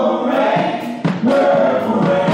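Gospel choir singing over instrumental accompaniment.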